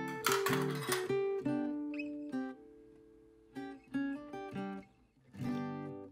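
Background music on acoustic guitar: plucked melody notes and strummed chords, ending on a last strummed chord that fades out.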